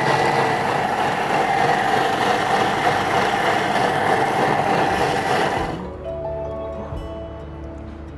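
Thermomix kitchen blender running at high speed, blending beef mince and hard-boiled egg into a creamy paste: a loud churning noise with a steady whine through it. It cuts off suddenly about six seconds in.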